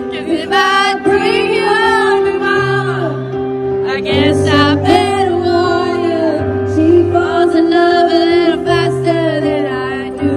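A female singer performing a slow ballad live with piano accompaniment, heard from far back in a large arena.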